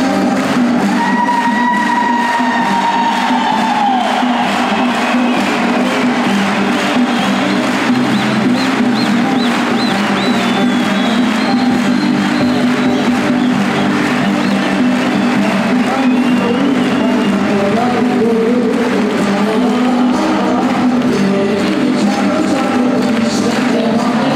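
Live folk band playing on stage with acoustic guitar, bağlama and congas, while a large crowd cheers.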